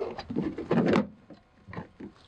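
A flexible macerator sewer dump hose being pulled out of its compartment in an RV's side, rubbing and scraping against the opening: two rough rubs in the first second, then a shorter one near the end.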